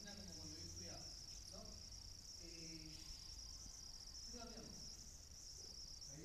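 A faint, echoing voice speaking in bursts in a large hall, over a steady high-pitched whine and a low hum.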